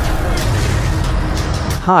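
Dense film-trailer soundtrack: a loud deep rumble under a noisy wash of sound effects, cut off sharply near the end as a man's voice begins.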